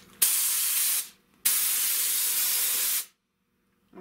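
Compressed-air glue spray gun spraying adhesive in two bursts, a short one and then a longer one of about a second and a half, each starting and stopping sharply. The air pressure is way too high and wants a regulator.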